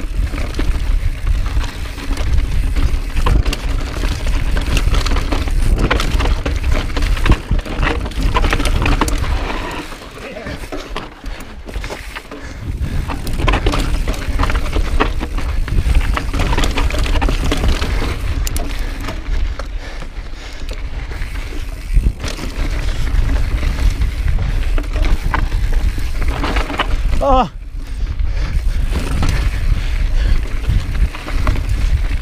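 Mountain bike descending rocky singletrack: knobby tyres rolling and crunching over rock and dirt, the bike clattering and rattling over bumps, with wind rushing on the camera microphone. The noise eases briefly about ten seconds in, and a short pitched sound comes near the end.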